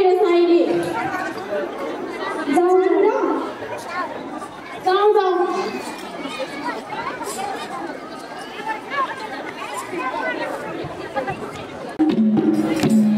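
Speech and crowd chatter, with three louder drawn-out voice phrases in the first half.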